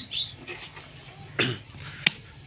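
A single short animal call about one and a half seconds in, with small birds chirping faintly in the background.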